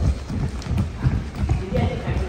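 Several people running barefoot across a gymnastics sprung floor: a quick, uneven patter of dull footfalls, about four or five a second.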